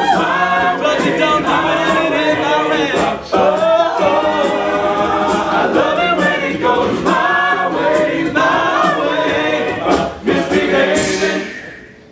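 Male a cappella group singing in close harmony with sharp vocal percussion hits cutting through the chords; the sound falls away steeply about a second before the end.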